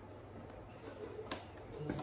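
Alginate molding powder poured from a foil bag into a bucket of water: a faint soft rustle of the bag, with one sharp click or crinkle about two-thirds of the way through.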